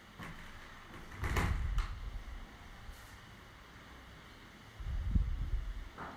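Handling noise: a short rubbing, knocking burst about a second in and a low rumble near the end, as the hand-held camera and test gear are moved about on a workbench.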